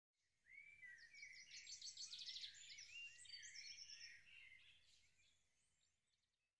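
Faint birdsong: birds chirping and trilling with quick pitch glides, fading out shortly before the title card appears.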